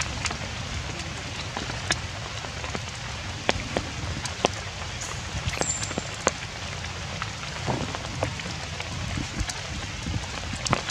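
Steady rain falling on leafy undergrowth, with scattered sharp taps of single drops.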